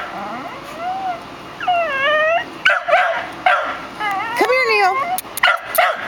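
A dog whining and yipping: a string of high calls that rise and fall in pitch, with a few short sharp yips near the end.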